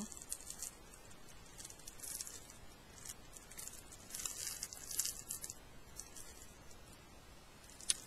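Faint, intermittent rustling and crinkling of small items and their packaging being handled, in a few short spells.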